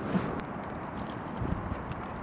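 Light clicks and knocks of climbing hardware and gear being handled on a climber's harness, one sharp click early and a dull knock about halfway, over a steady hiss.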